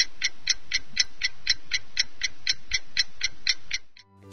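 Clock-ticking sound effect, about four even ticks a second, serving as a countdown timer for answering a quiz question. It stops shortly before the end.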